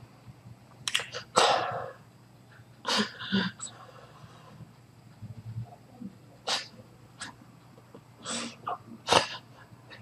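A man's sharp, forceful breaths and sniffs through nose and mouth, about eight irregular bursts, some longer and heavier than others, over a low steady hum.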